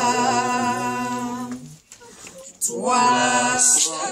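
Voices singing a worship song in French: a long held note ends about two seconds in, there is a short break, and then the next line begins.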